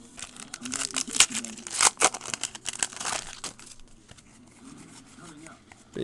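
Trading card pack wrapper being crinkled and torn open by hand: a dense run of sharp crackles for about the first three seconds, then quieter, scattered rustling as the cards are handled.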